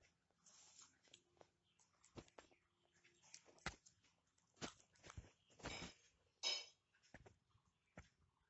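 Near silence with faint scattered clicks and a few brief rustles, the loudest a little past the middle, from a paper-and-cardboard model being handled.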